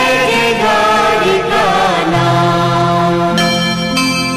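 Devotional hymn music: a voice singing a gliding melodic phrase over steady held instrumental tones. The voice stops about halfway through and the held accompaniment carries on alone.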